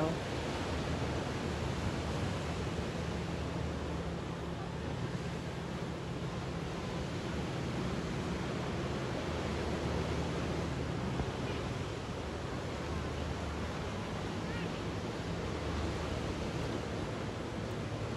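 Steady surf and wind noise off the Gulf, with a low, steady hum underneath that swells and fades slightly.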